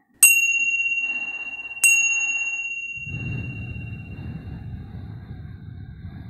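A chime struck twice, about a second and a half apart, each strike ringing on and fading slowly. The two rings signal that ten minutes of the breathing session have passed.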